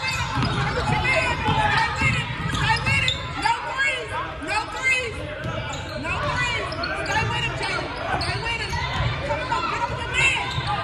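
Basketball game on a hardwood gym court: many short squeaks of sneakers on the floor and a ball bouncing, over chatter and calls from players and spectators, echoing in a large hall.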